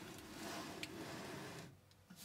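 Faint handling noise as a steel pedal box is turned around by hand on a tabletop: a soft rubbing, sliding sound with one small click a little under a second in, fading out near the end.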